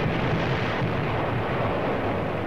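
Steady roaring noise with a low rumble underneath, with no separate blasts: a dubbed battle sound effect laid under archival combat footage.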